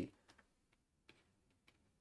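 Near silence with a few faint, sparse ticks from a stylus tapping on a tablet surface while handwriting.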